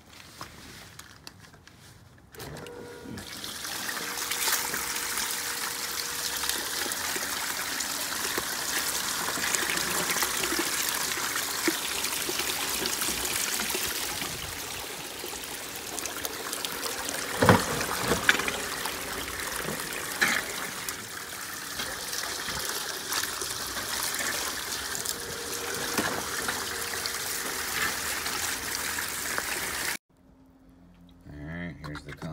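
Water and gravel slurry pouring and splashing down the sluice of a homemade bucket highbanker. The flow starts about two seconds in and runs steadily, with a few knocks around the middle.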